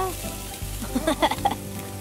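Barbecue meat sizzling on a charcoal kettle grill as it is turned with metal tongs, under background music with a steady bass line.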